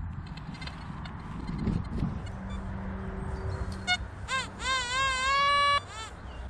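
XP ORX metal detector giving a target signal: a short beep, then a longer tone that wavers in pitch, holds steady and cuts off suddenly, the detector's response to metal under the coil.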